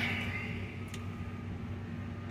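Steady low hum of an idling pickup truck, heard from inside the cab.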